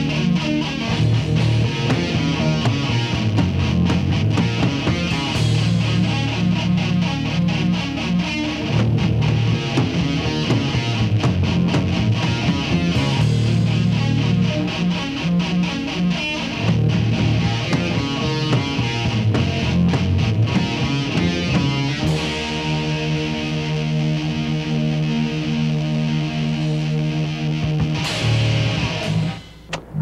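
Heavy metal band playing live: distorted electric guitars, bass and drums at a driving pace. About two-thirds of the way through, the band lands on a long held chord that rings out, then cuts off shortly before the end.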